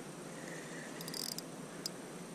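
Faint whir of a spinning reel being cranked to bring in a hooked crappie, with a brief higher rasp about a second in and a small click near the end.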